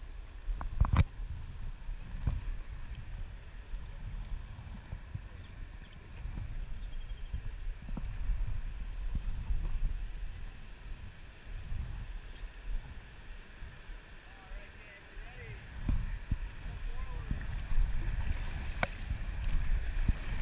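Water sloshing against the bow of an inflatable raft on a moving river, under a low rumble of wind on the microphone. A few sharp knocks come about a second in, with scattered smaller knocks later.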